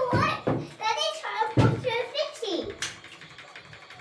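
Young children's high-pitched voices chattering and exclaiming for about two and a half seconds, then dying down, with a single sharp click just before the end.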